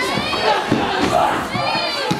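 Wrestling crowd shouting and yelling, with many voices overlapping. Two long, high-pitched shouts, typical of children's voices, cut through: one at the start and one near the end.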